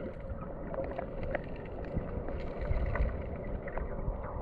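Creek water sloshing and splashing close to the microphone, with many small splashes, over a low rumble of wind on the microphone.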